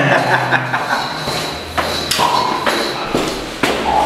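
A brief laugh, with scattered thumps and taps from people moving in a stairwell.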